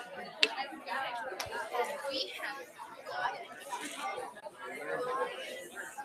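Many students talking at once in small groups, a steady babble of overlapping conversation in a large room. Two sharp clicks stand out in the first two seconds.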